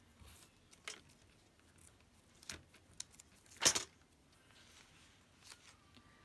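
Paper ephemera and journal pages being handled on a crafting table: a few brief rustles and taps, the loudest a little past halfway.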